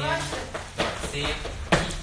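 A voice counting in a dance routine, with a sharp hit just under a second in and a louder, sharper hit near the end.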